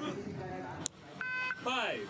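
Electronic start-gate countdown beep of an alpine ski race: one short, steady, high beep about a second in, part of a series of beeps about a second apart. A voice is heard briefly near the end.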